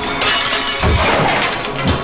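Glass shattering and breaking in a film's fight-scene sound mix, with a heavy thud about a second in and another near the end, over background music.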